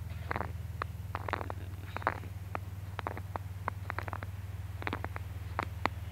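A steady low hum runs throughout, with scattered faint clicks and ticks over it at irregular intervals.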